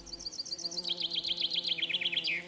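A songbird trilling, a rapid run of short high chirps about ten a second that steps lower in pitch about a second in, over a faint steady hum.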